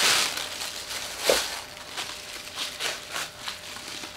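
Packaging rustling and crinkling as a zoom eyepiece is unpacked from its box by hand: a loud rustle at the start, then quieter crinkles and small clicks.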